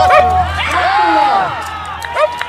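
Several people shouting and cheering loudly at a goal in a football match, the voices overlapping.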